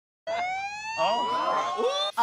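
A long, high-pitched shriek that rises steadily in pitch, with other excited voices joining in about a second in.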